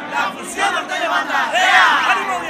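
A group of men's voices shouting together in a loud group cheer, loudest near the end.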